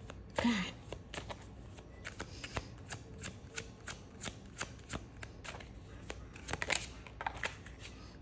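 A deck of tarot cards being shuffled by hand: a run of irregular light card clicks and flicks, coming thicker just before the end.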